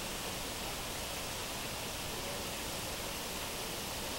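Waterfall pouring into a rock pool: a steady, even rush of falling water.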